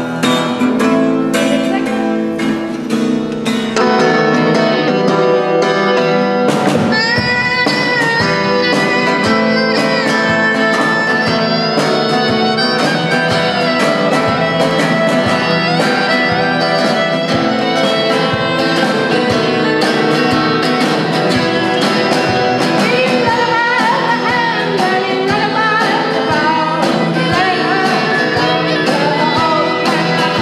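Live music: a woman singing while strumming an acoustic guitar, with the sound getting louder and fuller about four seconds in.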